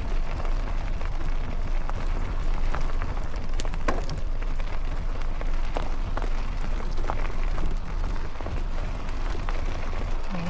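Riding noise from an e-mountain bike on a rough trail: wind rumbling on the camera microphone and tyres on stony ground, with scattered clicks and knocks, several of them near the middle.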